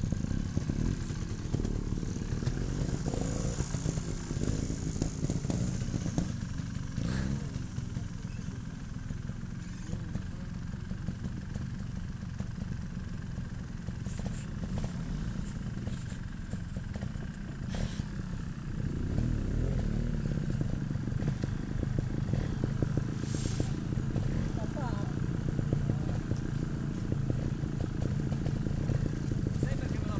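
Trials motorcycle engine running off-road, its revs rising and falling several times as it is blipped over rough ground, getting louder about two-thirds of the way through.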